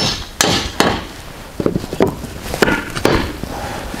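A series of sharp knocks, about seven at uneven spacing, as a short wooden spacer board is tapped into place between the two steel-pipe chords of a welded truss.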